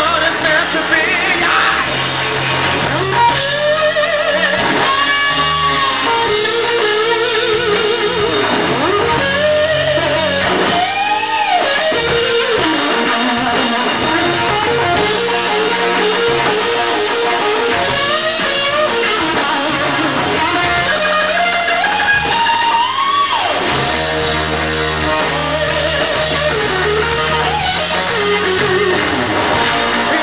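Live blues-rock electric guitar solo on a worn Fender Stratocaster, full of notes bent up and down and held, backed by bass, drums and keyboards.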